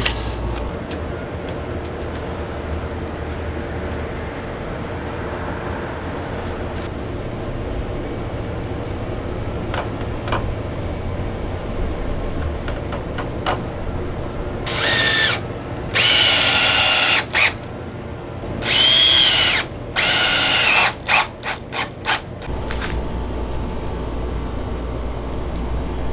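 Cordless drill driving screws into 2x4 framing lumber: after a stretch of low steady background hum, about halfway through, four runs of about a second each, the pitch climbing as each starts, then a quick string of short bursts.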